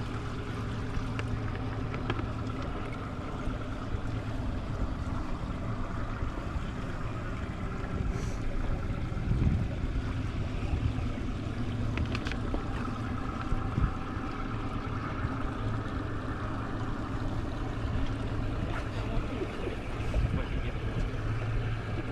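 Bass boat outboard motor running steadily at idle, a constant low hum, over wind and lapping water, with a few light knocks.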